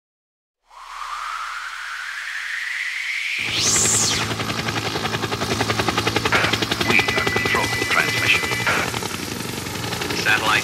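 Produced sound-effects intro: a rising electronic whoosh for about three seconds, peaking in a bright burst, then a dense fast-pulsing drone over a low steady hum, with a held electronic tone and short blips near the middle.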